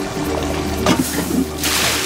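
Background music, then near the end a short, loud sizzling hiss from a glowing-hot pot.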